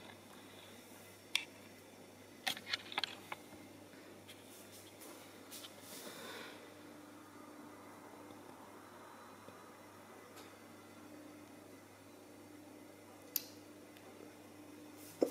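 Quiet indoor room tone with a low steady hum, broken by a few short, sharp clicks about a second in, around three seconds in and near the end.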